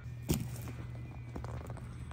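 Faint footsteps and a single knock about a third of a second in, over a steady low hum.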